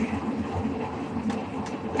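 Steady mechanical rumble and hiss of a ship's engines and ventilation, heard aboard.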